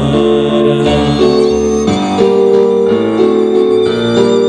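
Live instrumental music: a violin with an electronic keyboard playing a Bollywood melody in long held notes that change pitch about once a second.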